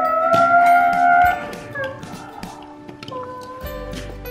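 A child's high-pitched vocal imitation of a screeching tyre burnout, held and rising slightly, then breaking off about a second in.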